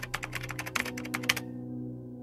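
Rapid keyboard-typing clicks, a burst that stops abruptly about a second and a half in, over a low, sustained ambient music drone.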